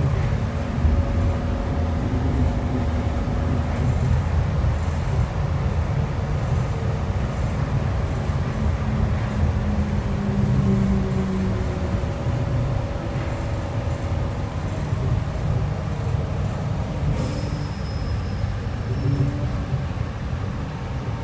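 Nippori-Toneri Liner rubber-tyred automated guideway train running along its guideway, heard from inside the car: a steady low rumble from the tyres and running gear, with faint held motor tones that come and go.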